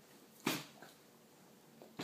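A baby's short vocal squeal about half a second in, followed by a couple of fainter mouth sounds as he sucks on a blackberry.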